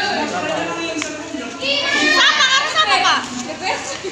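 Children's high-pitched voices chattering and calling out, loudest in the middle, with a short click about a second in.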